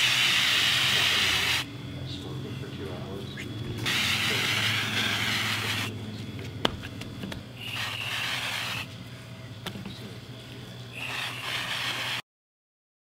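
Aerosol can of duck-fat cooking spray hissing in four bursts, two of about two seconds and two shorter ones, as it coats raw tri-tip roasts. A single sharp tap falls between the second and third bursts.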